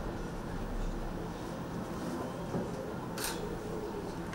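Steady low indoor room noise with no clear event, and a brief soft hiss about three seconds in.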